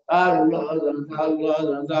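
A man chanting an Arabic devotional litany in a melodic recitation, reciting the names of the Prophet Muhammad.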